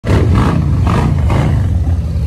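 A loud, deep roar that starts abruptly and surges about twice a second, as the intro's sound effect.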